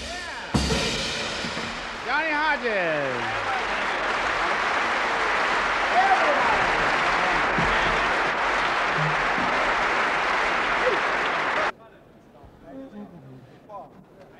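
Concert hall audience applauding as a big-band number ends, with a pitched sound sliding down over the applause about two seconds in. The applause cuts off suddenly near the end, leaving faint room sound.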